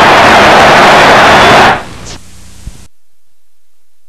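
Loud, even static hiss from a worn videotape recording that has lost its sound. It cuts off abruptly a little under two seconds in, fades out over the next second, and leaves silence.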